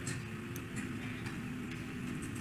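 Low steady hum of a hall's room tone through a speech recording, with a few faint short ticks.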